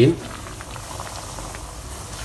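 Breaded chicken-and-cheese nuggets deep-frying in hot oil: a steady bubbling sizzle with small scattered crackles as the pieces are slid into the oil.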